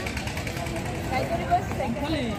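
Outdoor ambience: faint voices of passers-by over a low, steady rumble.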